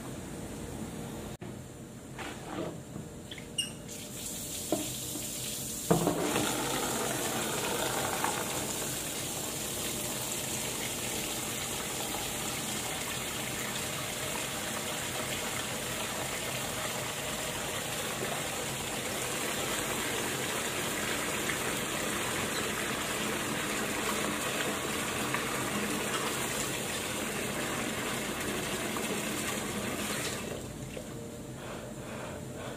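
A few light knocks, then about six seconds in a tap is turned on and water runs steadily into a sink. It stops near the end.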